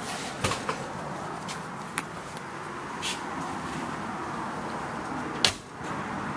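A car door of a classic Ford Mustang shut with one sharp thump about five and a half seconds in. Lighter clicks and knocks come before it, over a steady background hum.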